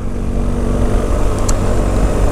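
Motorcycle engine running steadily at low cruising speed, with wind rushing over the microphone.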